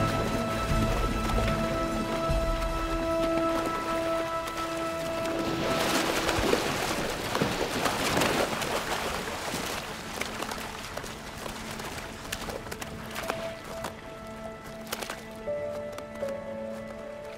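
Background music with long held notes over the rush and splash of river rapids, churned by a zebra floundering through them. About six seconds in the water noise surges loudly for a few seconds and then dies back under the music.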